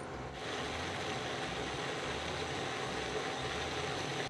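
Spiced jaggery water boiling hard in a steel pot on an induction cooktop: a steady bubbling hiss that starts about a third of a second in, with faint steady tones underneath.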